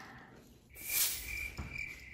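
Cricket chirping, starting suddenly about two-thirds of a second in as a high pulsing trill, with a brief whoosh just after it begins: an edited-in comic sound effect marking an awkward silence.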